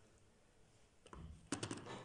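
Faint background hush, then a soft low thump about a second in and a quick run of four or five light clicks near the end.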